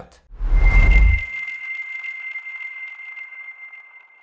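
Logo-reveal sound effect: a deep boom with a rush of noise about half a second in, leaving a single high ringing tone that slowly fades away.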